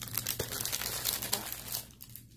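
Plastic wrapping crinkling and crackling as shrink-wrapped letter boards are handled, fading out near the end.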